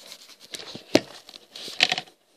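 Close handling noise from hands moving the camera and plastic Lego pieces: rustling and light knocks, with one sharp knock about a second in and a quick cluster of clicks near the end.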